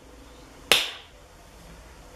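A single sharp finger snap about two-thirds of a second in, with a short ring after it, then faint room tone.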